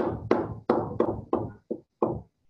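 A stylus tapping on a touchscreen, marking dots one by one: six sharp knocks, about three a second.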